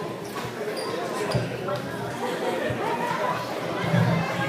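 Voices of people chatting in a large, echoing hall, with a few brief high clinks of tableware about a second in.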